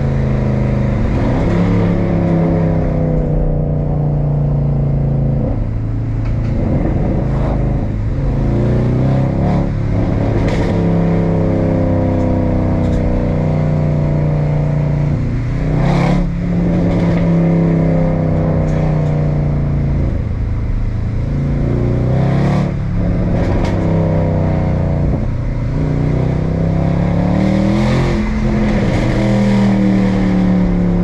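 Mercedes-AMG C63 Black Series 6.2-litre V8, heard inside the cabin, pulling through the gears: its note climbs and falls again and again. Several sharp cracks come at the gear changes, two of them about halfway and two thirds through, each with a brief dip in the engine's sound.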